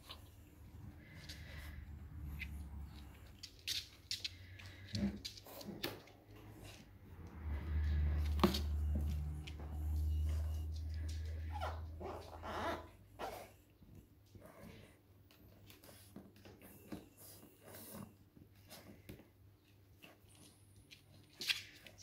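Labrador puppy moving about inside a plastic transport crate, its claws scratching and knocking irregularly on the crate floor and bedding. A few short puppy vocal sounds come in the middle stretch.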